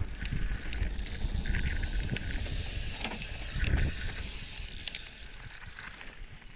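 Electric mountain bike riding over a rough dirt trail: wind buffets the helmet camera's microphone while the tyres rumble and the chain and frame rattle with many sharp clicks. There is a louder run of jolts a little past the middle, and the ride gets smoother near the end.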